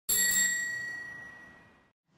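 A single bell strike: a bright ding that rings out and fades away over nearly two seconds.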